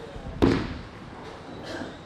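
A bowling ball released onto the lane: one sharp thud about half a second in as it lands on the wood, then it rolls on with a fading rumble.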